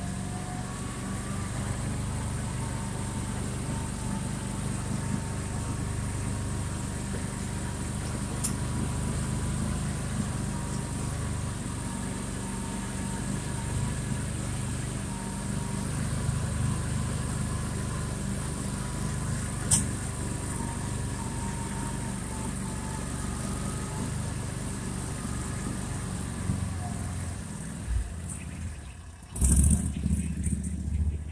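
Argo all-terrain vehicle's engine running steadily under load as it climbs a snowy hill, with a thin steady whine above the engine note. A short dip, then a brief louder burst near the end.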